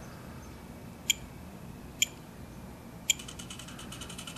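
Three short high beeps from a Spektrum radio transmitter as its roller steps the value up, about a second apart. Right after the third, a Hitec HSR-1425CR continuous-rotation servo starts to run, a fast, even ticking whir as it begins turning the GoPro camera mount.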